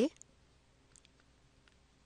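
A few faint, light clicks of a stylus tapping a pen tablet while handwriting is written, spread irregularly across the two seconds.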